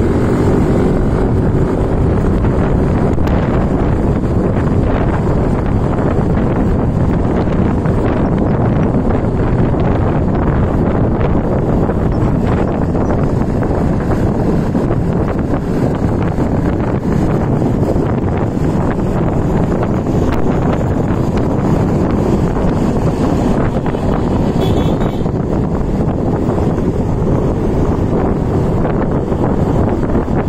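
Yamaha motor scooter cruising at around 40–50 km/h: steady engine and road noise under wind rushing over the microphone, with no pauses.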